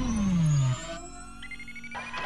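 Synthesized logo sound effects: a loud tone sweeping steadily down in pitch that cuts off about three-quarters of a second in, followed by a quieter steady low hum and a faint rising high tone near the end.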